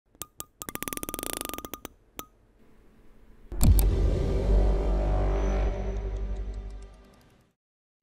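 Animated channel-logo sting: a few sharp clicks and a quick run of ticks, then a heavy hit at about three and a half seconds with a low sustained boom that fades out over the next three seconds or so.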